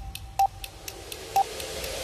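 Countdown-timer sound effect: a short mid-pitched beep about once a second, twice here, with faint quick ticking between the beeps.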